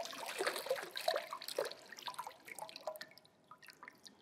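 Water poured from a glass into the water-filled basin of a baptismal font, splashing and trickling into it, then thinning to scattered separate drips near the end.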